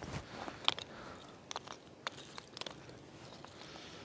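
Split wooden kindling sticks being picked through and set down: a few scattered light knocks and clacks of wood on wood.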